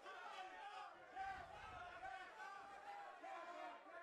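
Faint arena crowd of many overlapping voices shouting and calling out.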